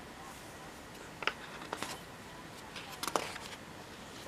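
Paper crackling and rustling as the pages of a calligraphy model book are handled and turned: a short crackle about a second in, another near two seconds, and a quick cluster around three seconds.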